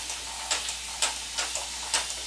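Pink trigger-style mist spray bottle spritzing water onto hair, several short sprays about two a second.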